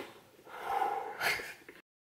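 Soft breathy mouth sounds from two people blowing and gasping through pursed lips, with a faint short 'ooh' in the middle; the sound cuts off suddenly just before the end.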